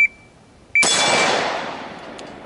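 A shot timer's start beep cuts off at the start. About a second later a single rifle shot from an AR-style carbine follows, its report dying away over about a second.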